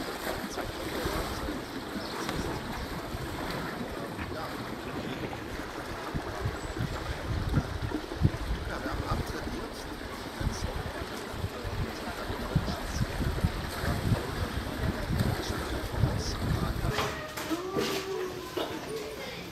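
Pool water splashing and lapping as a sea lion swims at the surface, with wind rumbling on the microphone and indistinct voices in the background.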